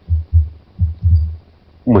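Dull low thuds of computer keyboard keystrokes carried to the microphone as a word is typed: two separate knocks, then a quicker run of several about a second in.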